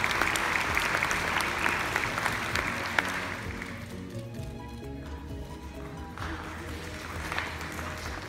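Audience applauding a graduate over steady instrumental music. The clapping is loudest in the first few seconds and dies away about four seconds in, then a second, smaller round of clapping rises about six seconds in.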